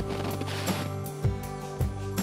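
Background music with held chords and a light, even beat.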